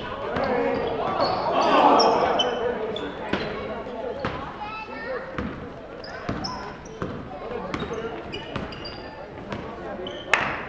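Basketball dribbled and bounced on a hardwood gym floor, a series of sharp knocks, with short high sneaker squeaks among them. Spectators' voices swell briefly about two seconds in, then settle.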